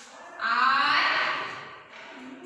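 A high-pitched voice holding one long, drawn-out syllable, starting about half a second in and lasting over a second.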